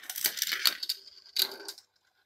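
GraviTrax marble run: marbles rolling along the thin metal rails and clattering through the plastic track pieces, a quick run of clicks with a faint metallic ring through the middle and a sharper click about a second and a half in.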